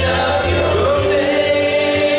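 Christian worship song: voices singing a slow melody over instrumental backing, one voice sliding up into a long held note about a second in.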